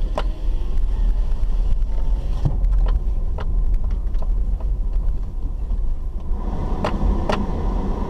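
Car driving slowly over a rutted dirt road, heard from inside the cabin: a steady low rumble of engine and tyres, with a few sharp knocks and rattles from the bumps.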